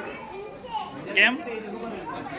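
Children talking and calling out as they play, with one voice loudest just past a second in. No balloon pop is heard.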